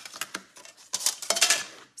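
Clear plastic plates clicking and clattering as they are handled and set down on a table, with a dense flurry of clatter about a second in.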